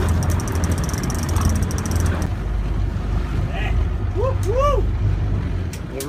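Boat engine running with a steady low drone, with rapid fine ticking over it for the first two seconds. Two short drawn-out voice sounds come about four and a half seconds in.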